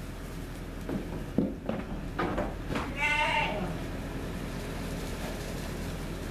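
A few knocks and scuffs, then a lamb bleats once, a wavering call about three seconds in.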